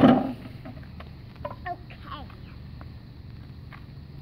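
Loud speech stops just after the start, then a quiet outdoor lull with a few faint, brief voice sounds in the first half.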